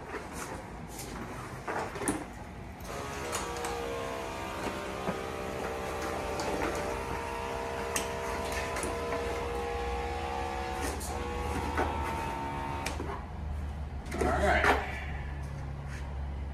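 Steady whine of several held tones from the motors of a homemade powered exosuit, starting about three seconds in and stopping near the end, as the wearer climbs out. Knocks and clatters of the suit's shell come at the start, and there is a short vocal sound near the end.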